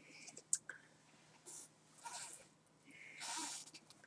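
Faint handling noises from skeins of yarn being moved and set down: a light click about half a second in, soft scattered rustles, and a longer breathy rustle about three seconds in.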